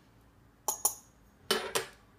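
A metal fork clinking against a ceramic bowl of dry spices: two light clinks a little over half a second in, then a louder, slightly ringing clink with a brief clatter near the end.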